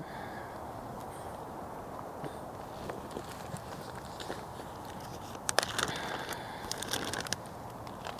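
A plastic zip-top bag of slushy, half-frozen broth crinkling and crackling as it is squeezed and handled, a cluster of crackles in the second half, over a steady background hiss.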